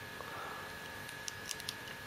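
Faint, scattered clicks and taps of hard plastic toy parts being handled: a small action figure being fitted into the toy jet's detachable glider tail.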